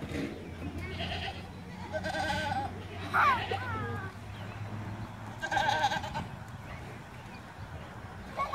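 Goats bleating through a farm pen fence: two wavering, quavering bleats, one about two seconds in and another near six seconds.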